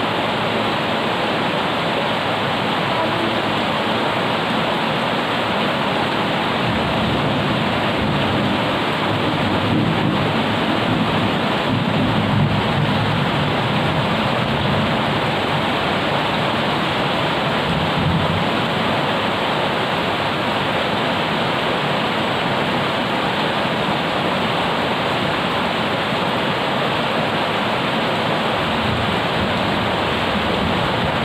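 Heavy rain falling on wet pavement and plants, a steady loud hiss. In the middle a low rumble swells and then fades back.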